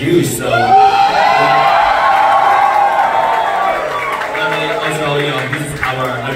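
Concert crowd cheering and whooping, with one long held shout from about half a second in until nearly four seconds.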